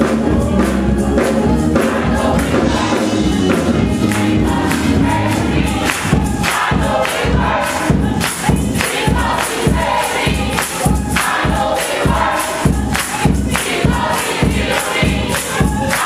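Gospel choir singing with keyboard accompaniment over a steady clapped beat that comes through strongly about six seconds in.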